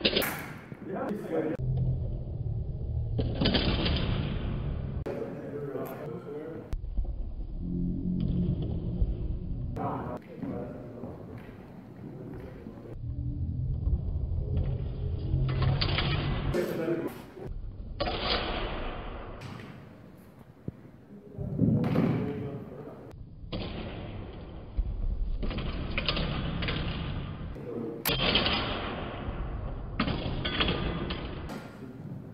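Indistinct talk and a laugh about halfway through, echoing in a large gym hall, with a few sharp knocks from longsword sparring.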